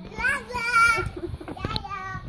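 A small child squealing and laughing in high, wavering bursts, loudest about a second in, with a few short knocks.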